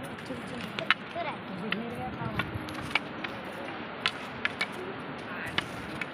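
Wooden walking sticks tapping on a rocky stone path: about nine sharp, irregular taps, with faint voices talking in the background.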